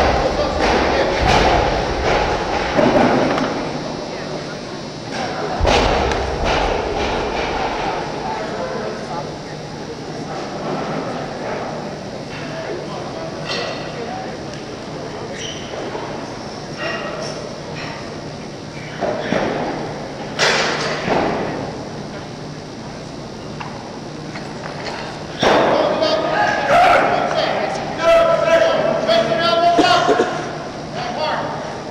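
Voices and crowd noise echoing in a large hall, with several heavy thuds from a loaded barbell on a weightlifting platform during a 167 kg clean and jerk attempt. There is a sharp bang about twenty seconds in.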